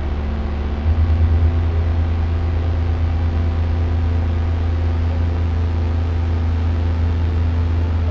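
Ambient drone music: a steady, deep hum with faint higher tones over a layer of hiss, the low tone swelling and getting louder about a second in.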